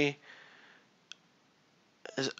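A pause in conversation: faint room tone with a single short click about a second in.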